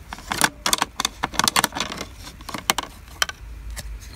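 Tableware clinking: a spoon and dishes tapping against each other in a quick run of sharp clinks over the first two seconds, then a few more spaced out.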